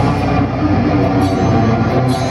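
Brutal death metal band playing live: distorted electric guitars, bass and a drum kit in a dense, loud, continuous mix, with cymbal hits cutting through.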